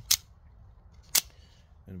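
Two sharp spring-driven clicks about a second apart: a Benchmade Shootout double-action out-the-front automatic knife snapping its blade out and back in.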